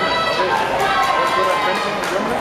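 High-pitched shouting from a fencer, with held, drawn-out cries over the steady noise of an arena crowd and other overlapping voices.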